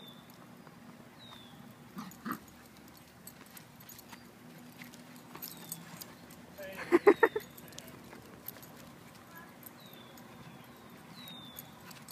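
A small dog gives a quick burst of four or five sharp yaps about seven seconds in, with a single shorter yelp about two seconds in.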